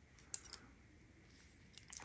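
A few faint metallic clicks from a brass snap hook being handled: one sharp click about a third of a second in, a lighter one just after, and a couple of light ticks near the end.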